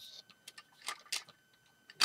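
A few light, sharp clicks of plastic Lego pieces knocking together as the model starfighter and its hyperdrive ring are handled.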